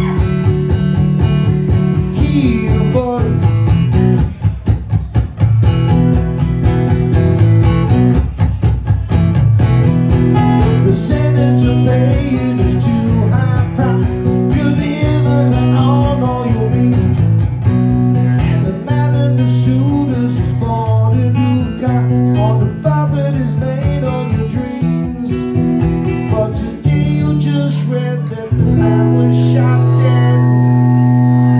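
Cole Clark acoustic guitar playing a bluesy riff with bent notes over a repeating low line. Near the end a chord is held and rings on steadily.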